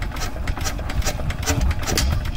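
Single-cylinder diesel engine of a two-wheel walking tractor idling, with an even rhythm of exhaust pulses at about four to five a second through its long upright exhaust pipe.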